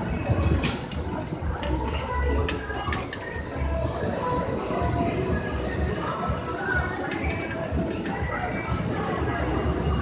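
Steel Ferris wheel car in motion: a steady low rumble with a few sharp metallic clanks and faint high squeals as the wheel carries the swinging car along.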